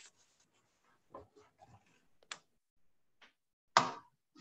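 A few scattered clicks and knocks picked up by an open video-call microphone, the loudest a sharp knock near the end.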